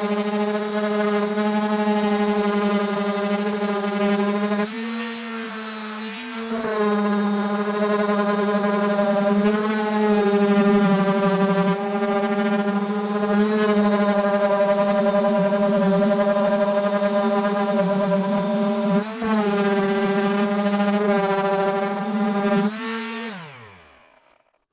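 Makita M9204 random orbit sander running with a steady hum while sanding old stain and finish off a wooden door panel. The hum dips briefly a few times. Near the end it is switched off and winds down.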